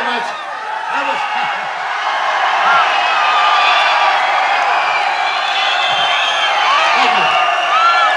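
Concert audience cheering and shouting, many voices at once, swelling over the first couple of seconds and then holding loud.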